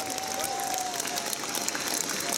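Concert audience applauding, with a single thin held tone over the clapping that slowly falls in pitch.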